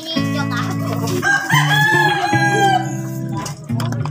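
A rooster crows once, a single long arched call of about a second and a half, heard over background music.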